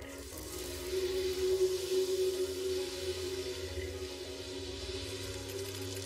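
Film score: a sustained low drone of held tones over a deep rumble, with a steady rushing hiss of noise laid over it.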